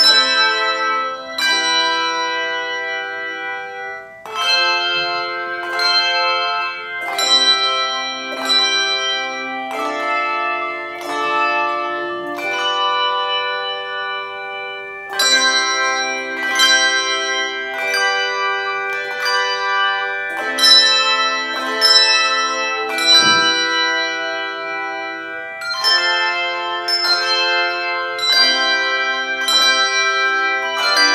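Handbell choir playing a piece: chords of hand-rung bells struck together and left ringing, roughly one to two a second, with a brief lull about four seconds in.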